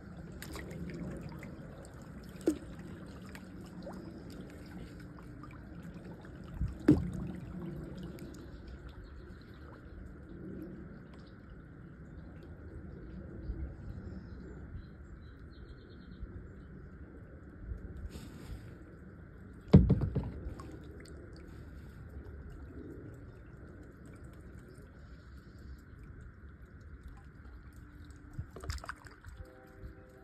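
Water lapping and trickling quietly around a plastic kayak drifting on the current, with a few sharp knocks, the loudest about twenty seconds in.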